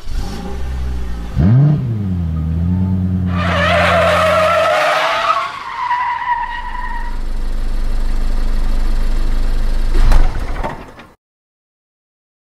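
Car sound effect: an engine revs once, then settles to a steady run, and tyres squeal for a few seconds. A lower engine rumble follows, ending in a sharp hit before the sound cuts off.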